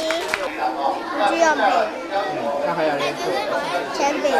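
Chatter of many children's voices talking over one another, heard with a large-room sound.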